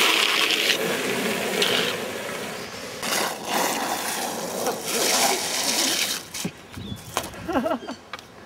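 Loud rushing roar of longboard wheels on rough asphalt mixed with wind, during a downhill slide, with several scrapes and knocks in the middle as the rider goes down onto the road. The roar dies away near the end.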